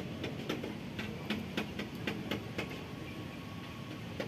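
A kitten chewing rice from a styrofoam tray close to the microphone: quick clicks, about three or four a second, that stop a little past halfway, over a steady background hum.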